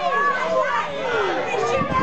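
Several children's voices shouting and calling over one another, high-pitched and continuous, as a crowd of young spectators cheers on a bout.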